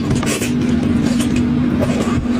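Crackling and wet tearing of a cooked fish head being pulled apart by hand, over a loud, steady low hum.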